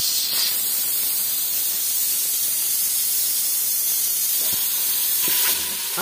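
Steam hissing steadily out of an aluminium pressure cooker's vent as its pressure is let off before the lid is opened, easing near the end.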